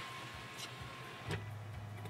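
Quiet Chevrolet pickup cabin: a low, steady engine hum comes up about two-thirds of the way in, with a couple of faint ticks before it.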